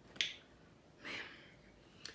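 A single sharp click just after the start, then a short, soft breath-like hiss about a second later, with no speech between them.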